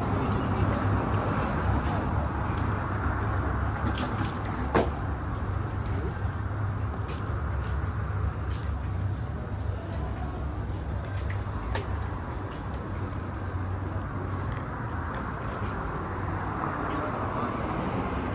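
City street ambience: a steady low traffic rumble with indistinct voices and a few light clicks.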